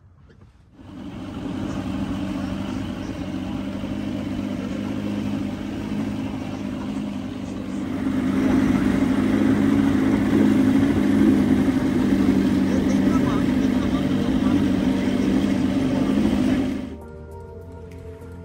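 Boat outboard motor running steadily under way, with the rush of water and wind; it starts suddenly about a second in and grows louder about eight seconds in. It stops near the end, where music takes over.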